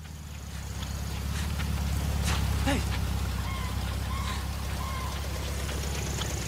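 Film soundtrack: a loud, low, steady rumble that builds over the first two seconds and then holds. A man says a short "hey" about two and a half seconds in, and a few faint high chirps come in the second half.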